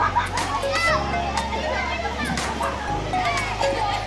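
Many children shouting and calling out as they play in a swimming pool, over background music with a steady bass line whose note changes every second or two.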